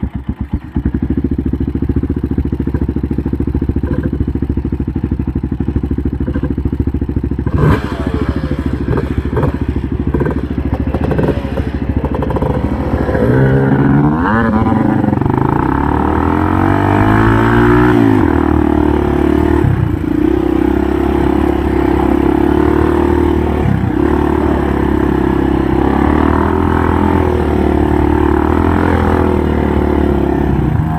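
ATV engine running under the rider, steady at first, then revving up in several rising sweeps about halfway through and holding a steady, higher pitch with a couple of brief dips.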